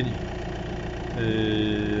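Steady low rumble of an idling engine. A little past halfway, a man's drawn-out hesitation sound 'yyy' is held on one pitch.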